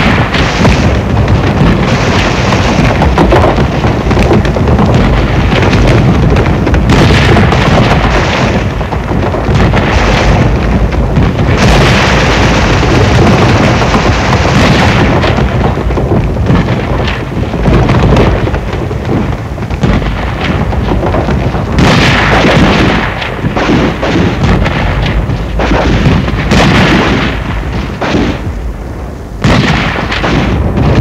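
Loud, sustained battle noise of a mock street-combat exercise: rapid gunfire mixed with explosions and booms, easing briefly just before the end.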